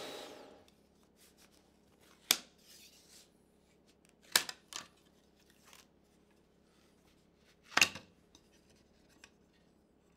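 Shaper Origin router's spindle winding down and stopping, followed by three sharp clicks and a few fainter taps of tools and workpiece being handled.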